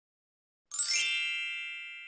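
A single chime sound effect: one ding with several high ringing tones. It sounds after a short silence and slowly fades away.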